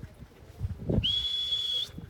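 A sheepdog handler's whistle: one steady high note, held for just under a second starting about halfway through, given as a command to the working sheepdogs.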